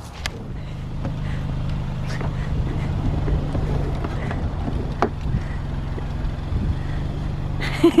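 Car engine idling steadily, with a few light knocks over it; laughter comes in at the very end.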